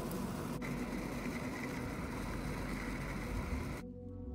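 Steady rolling noise of wheels on pavement while travelling at speed, with one sharp click about half a second in. The noise cuts off suddenly just before the end.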